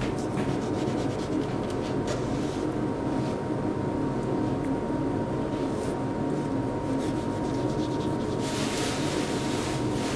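Long kitchen knife drawn through a block of raw tuna on a wooden cutting board: soft rubbing, slicing strokes, the hissiest near the end. A steady background hum with a thin high tone runs underneath.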